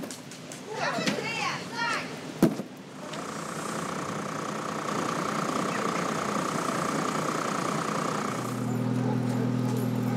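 Street-market ambience on a wet winter street: brief voices and a sharp knock, then a steady rushing noise like traffic on the wet road, joined near the end by a low steady hum.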